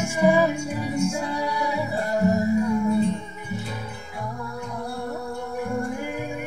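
Acoustic guitar music, the guitar played and layered to sound like wind chimes and waves, with sustained ringing notes over a repeating low bass pattern.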